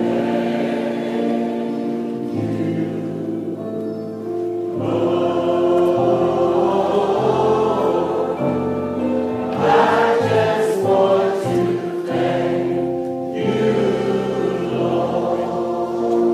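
Church congregation singing a gospel hymn together over sustained accompanying chords, swelling louder about five seconds in.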